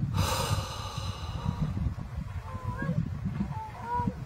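A man's sharp, breathy gasp or exhale in the first second, an exasperated reaction. Under it runs a low, uneven rumbling, with a few faint short chirps in the second half.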